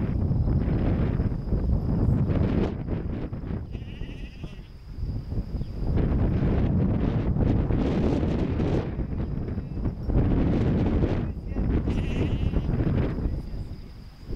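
Sheep bleating a few times over a steady low rumble.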